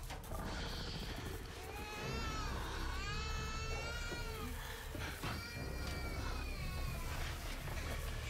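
Film soundtrack with a series of high wailing cries, each rising and falling over about a second, over a steady low rumble.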